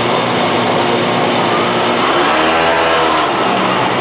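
Small motor scooter engine running as it is ridden slowly along a narrow lane. Its pitch rises and falls once in the middle.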